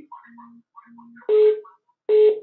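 Electronic tones over a telephone line: two short, faint low beeps in the first second, then a louder beep about a second and a half in.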